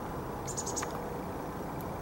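A bird chirping: a quick run of four high notes about half a second in, over a steady low background rumble.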